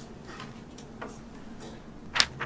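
A few faint, light clicks at uneven intervals, with paper being handled at a table, over quiet room tone.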